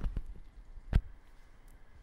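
A few faint knocks, then one sharp click about a second in, over quiet room tone.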